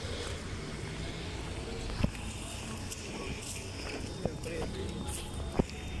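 Busy street ambience: a steady low rumble of traffic and wind, faint passing voices, and two sharp knocks, one about two seconds in and one near the end.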